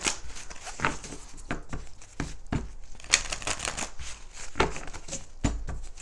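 Oracle cards being shuffled and handled by hand: an irregular run of quick flicks, taps and rustles of card stock.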